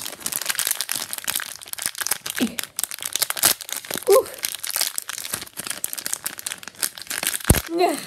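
Foil blind-bag packet crinkling and tearing as it is pulled open by hand, a dense run of sharp crackles. A low thump comes near the end.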